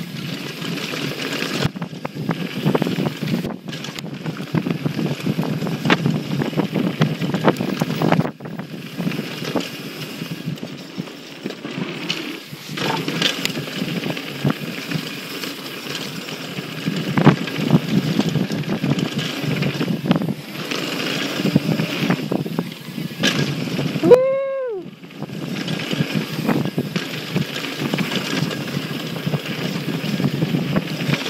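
Mountain bike descending a dirt trail at speed: steady wind rush over the microphone and tyre noise, with frequent knocks and rattles from the bike over bumps. Late on, a brief pitched tone rises and falls once.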